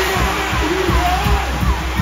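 Loud live soca music over the PA, with a steady kick-drum beat and a singer's voice, and a CO2 stage jet blasting with a sharp hiss that cuts in at the start.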